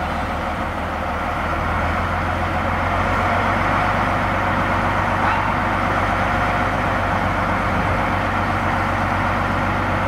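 Planet diesel shunting locomotive's engine running steadily with a low drone as it slowly hauls a DMU car, growing a little louder over the first few seconds.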